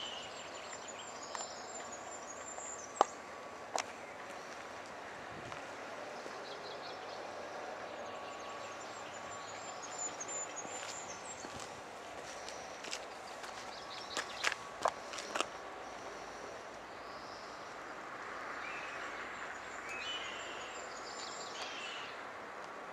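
Quiet outdoor ambience: footsteps on tarmac with a few sharp clicks, about 3 seconds in and a cluster near the middle, while birds sing in the background, repeating a short phrase every several seconds.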